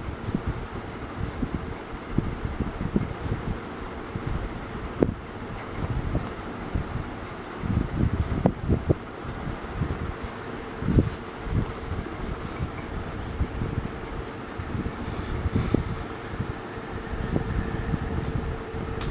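Steady fan hum with a constant faint whine, under irregular low rumbling and a few soft bumps of handling noise on the microphone.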